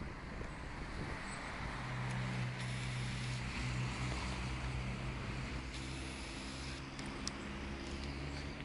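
Outdoor ambience with the low, steady hum of a vehicle engine on a nearby road, strongest from about two seconds in, over a faint wash of background noise; a single small click near the end.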